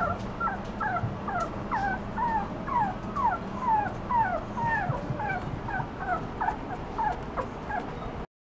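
A puppy whimpering in a quick run of short, high, falling cries, about three or four a second, with no let-up.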